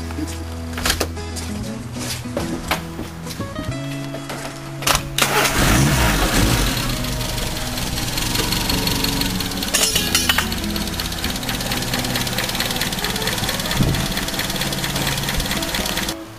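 Background music throughout; about five seconds in, the Reliant Rebel's engine starts with a sudden burst, revs briefly, then keeps running steadily at tick-over with its carburettor freshly set up.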